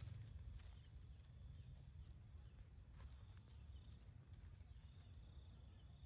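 Near silence: faint outdoor background with a low rumble and a few light clicks.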